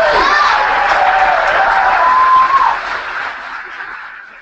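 Audience applauding and cheering after an acceptance speech, with a few voices calling out over the clapping. The sound fades away after a little under three seconds.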